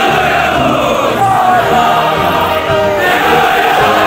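A large group of voices singing together in unison, holding long notes that slide down between pitches.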